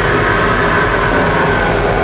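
Melodic death metal band playing live: distorted electric guitars and drum kit in a dense, steady wall of sound.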